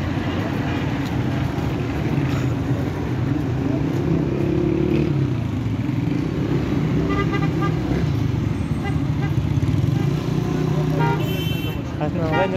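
Busy street traffic: a steady low rumble of engines running, with a car horn honking briefly in the middle and again near the end.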